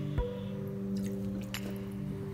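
Calm background music with sustained, ringing notes; a new note is struck just after the start.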